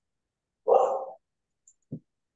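A dog barking once, a short single bark a little over half a second in, followed by a brief faint low sound near the end.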